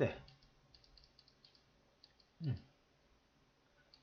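Faint, scattered light clicks of a computer mouse while annotations are drawn on the screen, a handful over about a second, followed about halfway through by a short low murmured "mm" from a man's voice.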